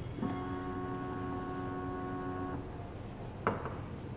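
Semi-automatic clinical chemistry analyzer's aspiration pump running for about two and a half seconds with a steady whine, drawing up distilled water for the baseline reading. A sharp click follows near the end.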